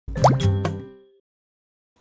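Short electronic logo sting: a quick rising sweep and three fast hits with ringing tones, fading out within about a second, then silence.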